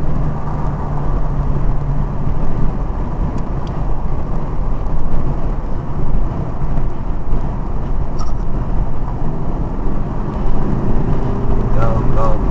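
Steady, loud rumble of a car's engine and tyre and wind noise heard from inside the cabin while driving on an open road.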